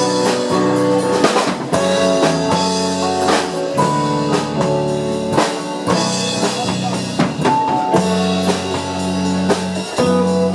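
Live rock band playing an instrumental break with no vocals: electric and acoustic guitars, bass guitar, a Kurzweil PC3 keyboard holding chords and a drum kit keeping a steady beat.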